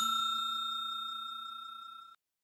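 A bell-like notification chime sound effect, the 'ding' of a subscribe-bell animation, ringing as one clear tone with higher overtones and fading steadily.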